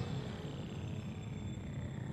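Electronic intro sting for a TV sports segment: a low rumbling bed with held tones and one slowly falling electronic tone, easing down in level.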